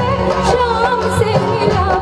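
Live Indian folk song: a woman singing a wavering melody into a microphone over keyboard and percussion accompaniment, amplified through a stage sound system.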